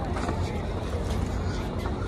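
Steady low rumble of wind on the microphone over a plaza's background hum, with faint distant voices.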